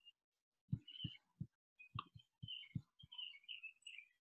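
Faint, irregular low thumps, about eight in a few seconds, with faint high chirps between them in the second half.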